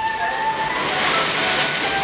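Metal roller shutter being raised, a rattling noise that swells a little about halfway through, under a background music melody.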